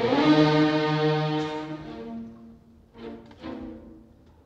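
Opera orchestra with prominent brass: a loud held chord that fades away over about two seconds, then two short, quieter chords about three seconds in.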